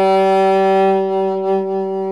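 Saxophone holding one long, steady note.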